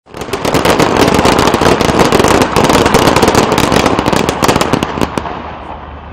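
Ceremonial rifle salute fired by massed ranks of soldiers: a loud, rapid ripple of many shots running together into a dense crackle for about five seconds, thinning out and stopping shortly before the end.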